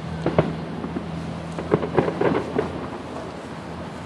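Distant aerial fireworks going off: a string of booms and crackles, the sharpest about half a second and two seconds in.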